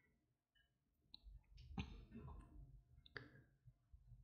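Near silence with a few faint, short clicks from a metal crochet hook and yarn being worked through double crochet stitches.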